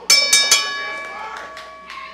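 Metal ring bell struck three times in quick succession, signalling the start of the wrestling match; its ringing fades away over the next second and a half.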